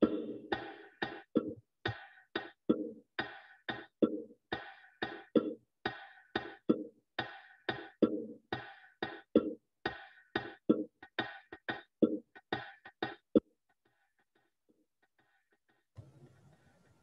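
Recorded malfouf rhythm played on bongos: a steady pattern of low and high drum strokes, about two a second. About thirteen seconds in the playback suddenly drops out, which is put down to feedback on the audio link.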